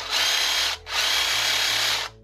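Parkside PSSSA 20-Li A1 cordless jigsaw/sabre saw running free with no blade load, in two short trigger bursts with a brief stop just before a second in. Its motor and reciprocating drive give a high whine over a rattle.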